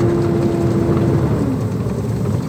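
Iveco truck's diesel engine running with the engine brake applied on a long downhill, heard inside the cab as a steady rumble with a steady hum on top. About a second and a half in, the hum breaks off and drops in pitch as the gearbox shifts down from 13th to 12th gear.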